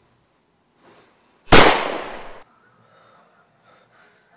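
A single loud bang about a second and a half in, dying away over about a second before cutting off abruptly.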